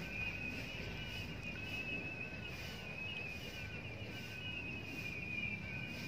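Steady high-pitched chirring of small animals outdoors, with a fainter short note repeating a little less than twice a second.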